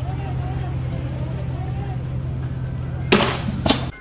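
Street clash sound: a steady low rumble with faint distant shouting, then about three seconds in a loud sudden blast lasting about half a second, followed shortly by a second sharp crack.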